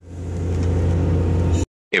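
CNC milling machine crashing a drill bit into a metal baseplate: a loud, steady grinding drone with a strong low hum that sets in at once and cuts off suddenly after about a second and a half. The crash comes from the drill's tool length being entered under the wrong tool number, so the machine drove it into the part.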